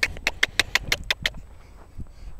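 A rapid run of about ten sharp clicks, roughly seven a second, lasting just over a second.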